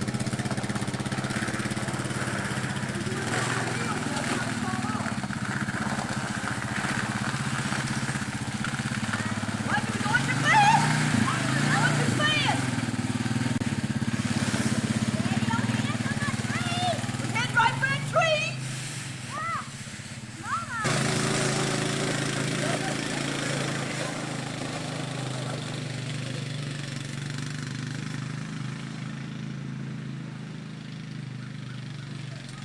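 ATV engine running steadily throughout. In the middle stretch, the children riding the towed sled shout and scream several times.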